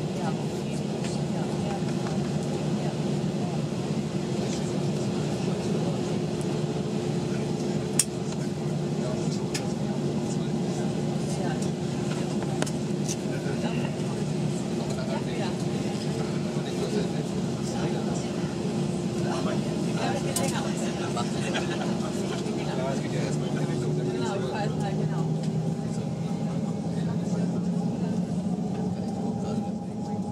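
Cabin noise of an Airbus A320-232 taxiing slowly: a steady hum from its IAE V2500 engines and air system, with a constant tone throughout and a lower tone that rises slightly near the end. A sharp click sounds about eight seconds in, among fainter clinks and a murmur of passenger voices.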